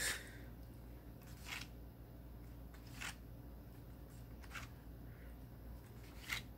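Faint handling noises: three brief rustles, about a second and a half apart, of hands moving paper and record or magazine items, over a steady low hum.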